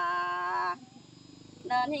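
A singer holding a long sung note in a call-and-response Tai folk song, which breaks off a little under a second in; after a short pause the singing resumes near the end.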